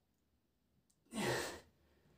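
A man's single noisy breath with the effort of a push-up, a little over a second in and lasting about half a second.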